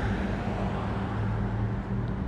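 A steady low hum with an even rumble of background noise.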